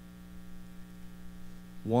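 Steady electrical mains hum with a faint buzz above it, heard in a pause between spoken lines. A man's voice begins right at the end.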